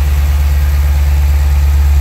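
The 6.4-litre 392 Hemi V8 of a 2011 Dodge Challenger SRT8, fitted with a K&N cold air intake, idling steadily and smoothly, heard close up from the open engine bay.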